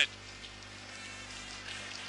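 Steady buzzing drone of a football stadium crowd under a match broadcast, with no commentary.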